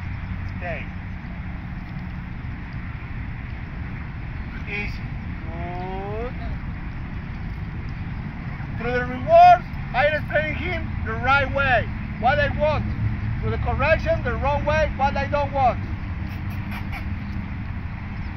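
Steady low outdoor rumble. About nine seconds in, a run of short, pitched calls that rise and fall begins and lasts about seven seconds; the first call is the loudest.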